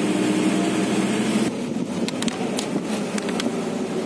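Engine and road noise inside a moving car's cabin, a steady low hum. About one and a half seconds in, the sound changes abruptly, and a few light clicks follow.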